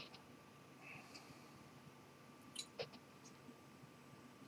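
Near silence: faint room tone with a steady faint hum and a few soft, short clicks, two of them close together about two and a half seconds in.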